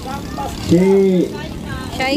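A voice holds out one syllable about halfway through, over steady low background noise.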